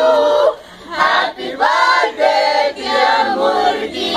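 A group of young people, mostly women, singing together unaccompanied, with a short break between phrases about half a second in.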